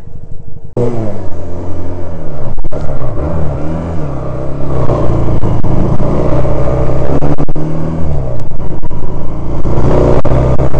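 Motorcycle engine coming in loudly about a second in and running on as the bike pulls away, its pitch dipping and rising with the throttle and gear changes.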